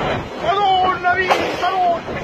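A person's voice calling out over the dense rush of storm wind. A single sharp knock comes just past a second in.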